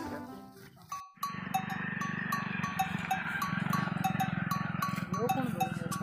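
Bells on grazing livestock clinking in an uneven repeating rhythm over a steady low murmur of the herd. It starts after a brief near-silent gap about a second in.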